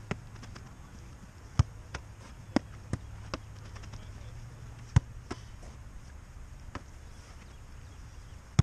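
A football being struck and caught in a goalkeeper drill: sharp thuds of foot and gloves on the ball, about eight over the few seconds, some in quick pairs, the loudest about a second and a half in and again about five seconds in. A low steady hum runs underneath.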